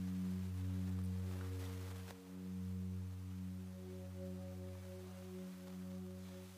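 Background ambient music: a sustained, steady synth drone chord with no beat, holding through the whole stretch.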